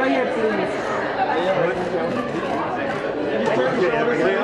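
Indistinct chatter of several voices talking over one another, with no single speaker standing out.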